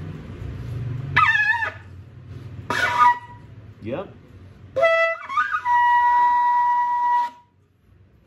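Sable antelope horn shofar blown for its high note: two short, wavering attempts, then a long held high tone of about two seconds that jumps up from a lower note as it starts, the shofar's high C.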